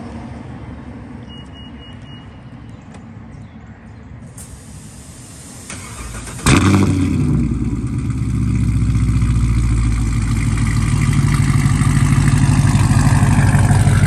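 Chevrolet Camaro SS V8 starting up about six and a half seconds in: it catches with a sudden loud burst, then settles into a loud, steady idle through its exhaust.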